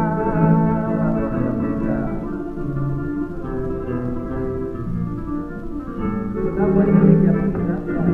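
Flamenco guitar playing between sung lines on a 1930 shellac 78 record. A woman's held sung note ends about a second in.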